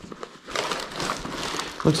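Thin plastic bag crinkling and rustling as gloved hands handle it, starting about half a second in.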